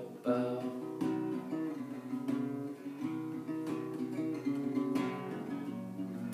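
Solo dreadnought acoustic guitar playing without vocals: a picked chord pattern with a moving line of notes and a fresh attack every second or so.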